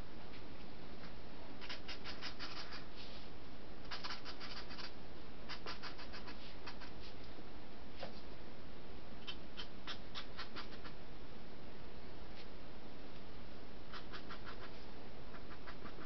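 Pen scratching on paper as a comic page is inked, in several short runs of quick strokes with pauses between, over a steady faint hiss.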